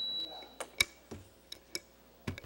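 A few separate sharp clicks and light knocks, the loudest a little under a second in: handling noise at a lectern microphone as papers are picked up.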